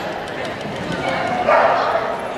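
A dog barking during an agility run, loudest in a sharp bark about one and a half seconds in, over voices in the background.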